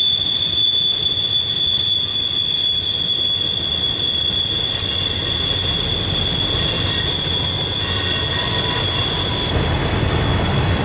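Intermodal freight train rolling past, its steel wheels squealing in a steady high-pitched tone over the rumble of the cars. A higher squeal drops out near the end.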